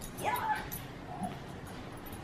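A dog whining: one short whine that rises in pitch and holds about a quarter second in, then a fainter short one a second later.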